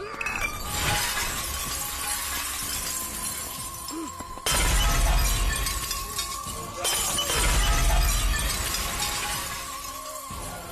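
Glass shattering, with shards of glass scattering and crunching on a hard floor, over film music holding a steady high tone. Two sudden, louder crashes come about four and a half and seven seconds in.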